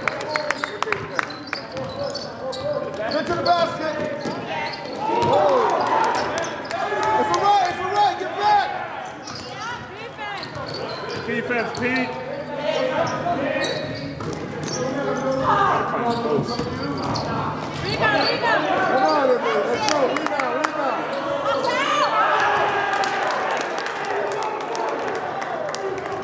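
A basketball dribbled on a gym floor, the bounces echoing in a large hall. Players' and the bench's voices call out over it throughout.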